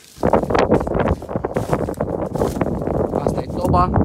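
Wind buffeting the phone's microphone, starting suddenly about a quarter second in and rumbling on unevenly.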